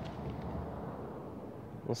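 Steady, fairly quiet outdoor background noise with a low hum and no distinct events; a man's voice begins right at the end.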